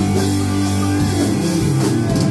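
Live rock band playing: electric guitars strummed over drums, loud and steady, with the chord changing about a second in.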